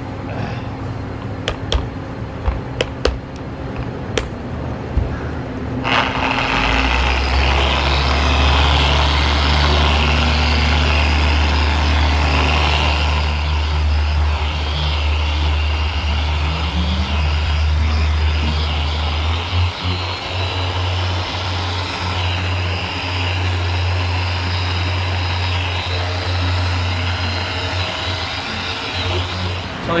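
Electric rotary polisher with a foam pad buffing ceramic primer polish into car paint. It starts about six seconds in and runs steadily, its pitch stepping up a little partway through, then stops just before the end.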